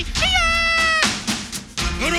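A cartoon voice sweeps up into a high note, holds it steady for about a second and breaks off, over music.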